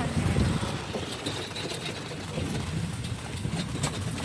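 Steady low rumble of a horse-drawn carriage in motion, with a few faint clicks over it.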